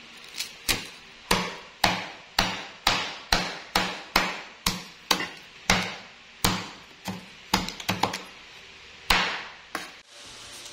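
Large kitchen knife chopping crispy deep-fried pork leg on a wooden cutting board, the blade knocking on the board about twice a second, with a quick run of four chops near the end.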